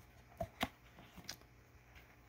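Faint handling noises: a couple of soft clicks about half a second in and a fainter one a little later, as fingers work a small plastic toy gun loose from a foam-lined cardboard box insert.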